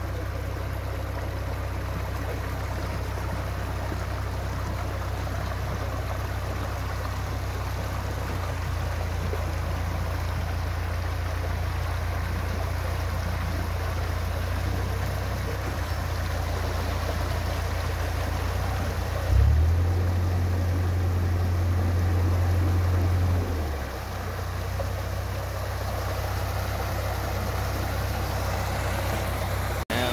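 Water cascading in two jets through and over a canal lock's top gate into the lock chamber, a steady rushing noise. Underneath it a narrowboat engine idles with a low, steady note that rises for about four seconds a little past the middle, then settles back.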